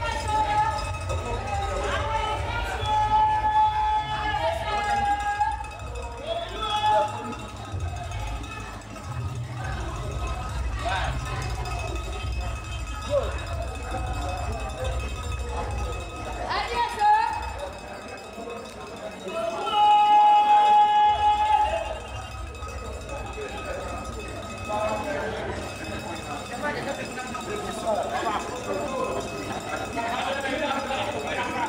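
People's voices talking and calling out, with two long drawn-out calls about three seconds in and again about twenty seconds in, over a steady low rumble.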